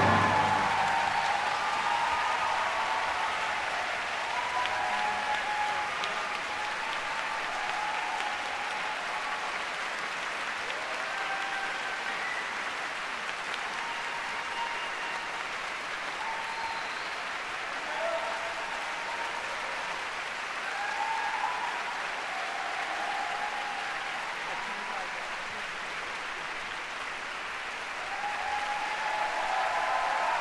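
Concert-hall audience applauding steadily after a piano orchestra performance, with scattered shouts and cheers rising above the clapping. The applause swells again near the end as the players bow.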